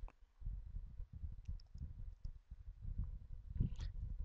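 A single computer mouse click near the start, then a faint, uneven low rumble of microphone noise.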